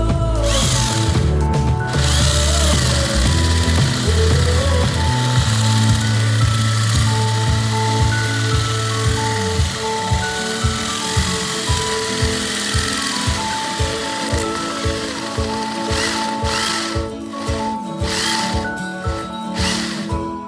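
Electric drill cutting down through plywood with a large Forstner bit, a hissing grind of wood being bored that eases off about 16 s in, with two short bursts near the end. Background music with a beat plays throughout.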